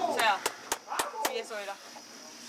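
Several people talking at once in the background, with a run of short sharp clicks scattered among the voices.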